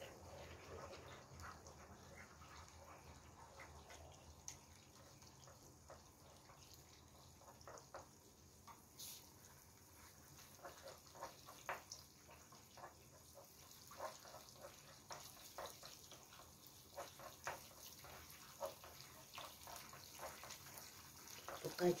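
Black bean paste (chunjang) frying in plenty of oil in a pan as it is stirred with a wooden spoon: a faint sizzle with scattered small pops and crackles that grow more frequent in the second half. The popping is the sign the cook waits for, showing the paste is frying properly.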